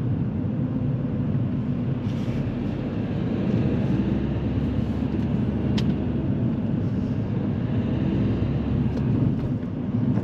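Interior noise of a car being driven: a steady low rumble of engine and tyres on the road, with a single brief click about six seconds in.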